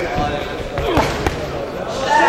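Gloved punches landing in a boxing bout: a few sharp thuds around a second in, over men shouting from ringside.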